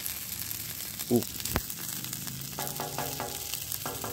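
Smash burger patties and freshly poured cooking oil sizzling steadily on a hot flat-top griddle, with a sharp click about a second and a half in.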